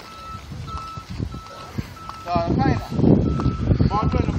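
A vehicle's reversing alarm beeps steadily at a high pitch, about twice a second. From about two seconds in, a louder low rumble joins it, with a child's short high voice calls.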